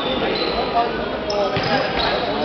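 Handball bouncing on a sports-hall floor amid indistinct voices and calls from players and spectators, with a few short high squeaks that fit shoes on the court.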